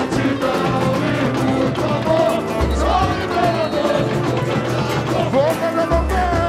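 Live samba-enredo: voices singing the melody over a samba school's drum section, with dense, steady percussion and a deep drum note swelling twice.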